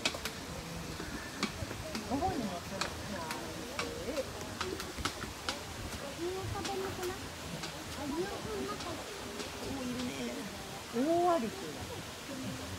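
A giant anteater feeding from a metal bowl, making a run of irregular light clicks, several a second, against the voices of people talking, which get louder briefly near the end.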